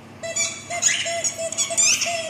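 Rubber squeaky ball squeaking over and over as a Labrador chews on it, in quick high-pitched squeaks about three to four a second.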